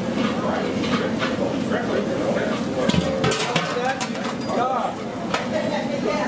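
Several people talking at once in the background, with a few sharp knocks about three seconds in as a large aluminium boiling pot is stood upright on the concrete.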